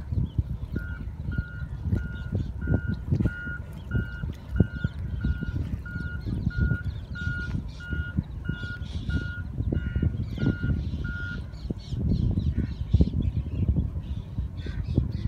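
Vehicle reversing alarm beeping steadily, about one and a half to two beeps a second, stopping around eleven seconds in. It sounds over a louder, uneven low rumble with scattered knocks.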